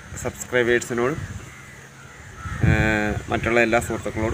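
A man talking in short phrases with pauses between them, and one longer, steadier call about two and a half seconds in.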